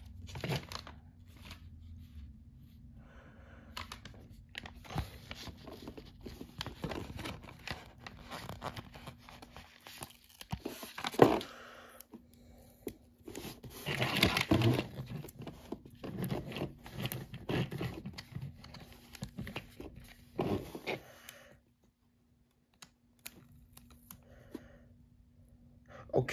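Hands handling plastic toy race-track pieces and pressing a paper sticker onto a plastic flag: scattered light clicks, rustles and scrapes. The loudest handling comes about eleven, fourteen and twenty seconds in.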